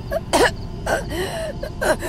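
A young woman coughing repeatedly, about four short coughs.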